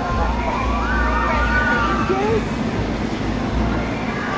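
Steel roller coaster train running along its track with a steady low rumble, and high wavering cries from the riders over it for the first couple of seconds.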